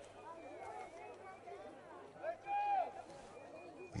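Faint, distant shouts and calls of players and onlookers at an open-air football match, with one louder drawn-out shout a little past halfway. A steady low hum sits under it.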